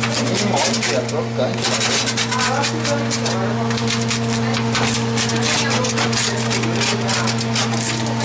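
Wheel pizza cutter rolling through pizza crust and scraping on a metal pizza pan, a rapid run of scratchy clicks from about a second and a half in, over a steady low hum.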